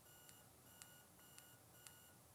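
Very faint, steady high whine from the stepper motor of a MJKZZ QOOL Rail 250 focus-stacking rail as it drives the camera forward through the subject, with faint ticks about every half second.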